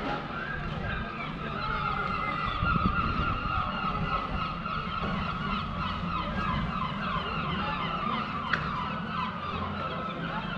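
Many birds calling at once, a dense unbroken chatter of short chirps, over a low outdoor rumble. A single sharp click sounds about eight and a half seconds in.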